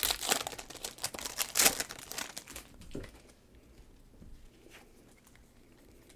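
Foil wrapper of a trading-card pack crinkling and tearing as it is pulled open by hand. The crackling dies down after about three seconds, leaving only a few faint clicks.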